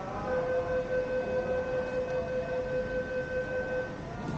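A steady electronic signal tone at the Peak Tram platform: one long, even note that starts just after the beginning and cuts off near the end, held about three and a half seconds.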